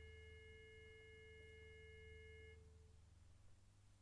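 Faint, steady chord of pure sustained tones, one lower and three high, that cuts off about two and a half seconds in, leaving near silence with a low hum.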